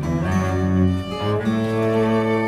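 Chamber string ensemble of violins and cello, with classical guitar, playing a fandango: held bowed chords over a low cello line, the harmony changing at the start and again about a second and a half in.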